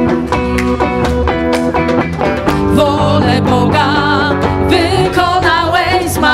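Live worship band playing a song with drums, electric guitar and bass, and a voice singing over it.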